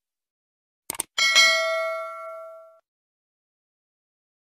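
Two quick clicks, then a single bell-like ding that rings and fades away over about a second and a half.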